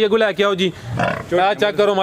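A man talking, with a short grunt from a water buffalo about a second in.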